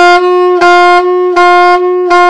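Saxophone playing one note over and over, each note briefly cut off by the tongue. This is half-tonguing: the tongue touches half of the reed tip, which muffles the tone into ghosted notes.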